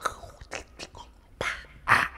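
Wordless raw vocal sounds made close into a handheld microphone in lettrist sound poetry: a string of sharp mouth clicks and hissing, rasping breath bursts, the loudest burst near the end.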